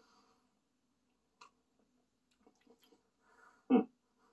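A man sipping beer from a glass, with a few soft mouth clicks and swallows, then a short appreciative "hmm" near the end.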